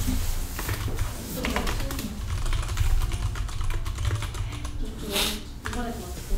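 Typing on a computer keyboard: a run of uneven key clicks, with a short noisy burst about five seconds in.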